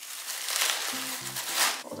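Crinkled kraft paper shred rustling as a handful is stuffed into a bubble mailer.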